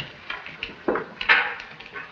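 A string of short knocks and scuffling sounds, with a brief grunt about a second in; the loudest knock comes just after it.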